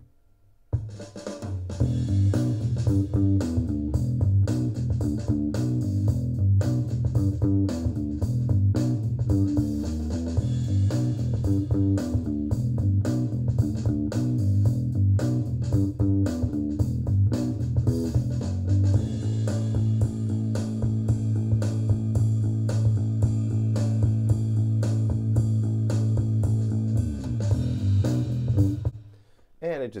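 Soloed electric bass track recorded through a Line 6 Helix, played back from GarageBand. A busy line of low notes starts about a second in; for the last third it settles on one long held note, which stops shortly before the end.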